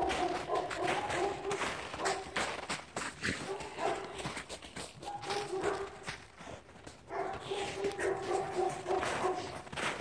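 Two dogs playing in snow, with a dog whining on and off in held, steady-pitched calls, most continuously in the second half, over the scuffing of paws in the snow.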